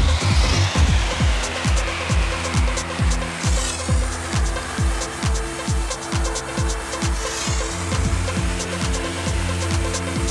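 Techno from a DJ mix, with a steady four-on-the-floor kick drum at a little over two beats a second under busy hi-hats and held bass notes. A swirling sweep falls through the upper range every few seconds.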